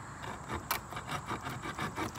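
The sawback teeth on the spine of a Muela 5161 tactical knife sawing through wood in quick back-and-forth strokes, with one sharper click about a third of the way in.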